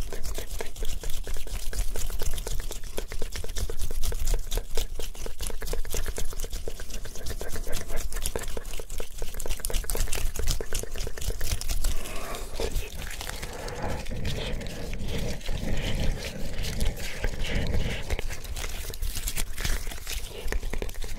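Close-miked hand sounds of fingers squeezing and working a small yellow squishy object: dense, fast, wet-sounding crackling and clicking. About twelve seconds in it turns lower and more muffled.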